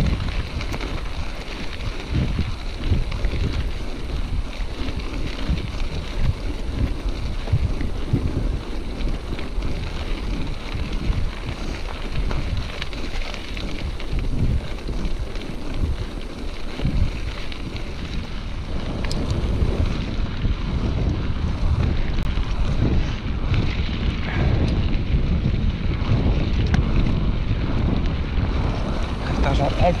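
Wind rushing over an action camera's microphone as a hardtail mountain bike rolls along a gravel track, with a steady low rumble from the tyres and frequent small knocks and rattles from the bike over the rough surface.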